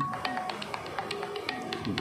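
A pause between sung lines, filled by a quick, even run of light taps keeping time, several a second, over faint music.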